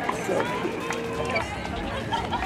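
Indistinct voices and light crowd noise around a tennis court.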